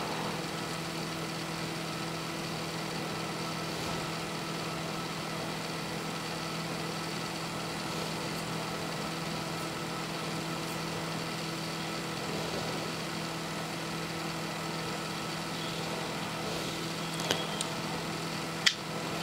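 A steady hum with a constant low tone, unchanging throughout, with a faint click near the end.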